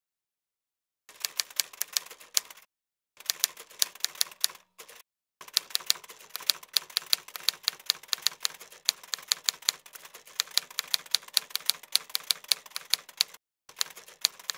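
Typewriter-style typing sound effect: rapid key clicks in several bursts with short pauses between them, starting about a second in.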